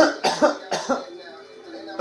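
A man coughing, a loud first cough followed by four short coughs in quick succession in the first second, after inhaling bong smoke. Rap music plays faintly underneath.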